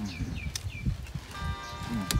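A bird chirping three times in quick succession, each chirp a short falling note.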